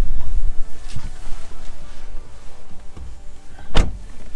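Handling rumble and rustling from a handheld camera being moved around inside a car, with a couple of light knocks and one sharp, loud thump near the end.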